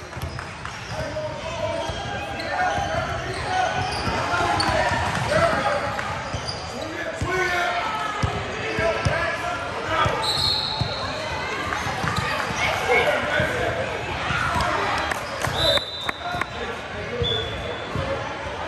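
Basketball being dribbled on a hardwood gym floor, with indistinct voices of players and spectators echoing in the hall. A few brief high-pitched squeals come about ten seconds in and again near the end.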